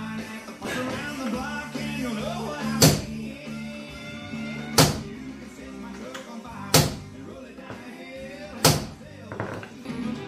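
Country music with guitar playing on a radio, with four sharp knocks evenly spaced about two seconds apart.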